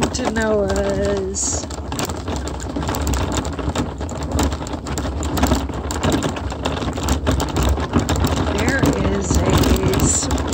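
Wheels rolling over a gravel road, a steady low rumble under a dense patter of small stones crackling and popping. A person's voice is heard briefly at the start.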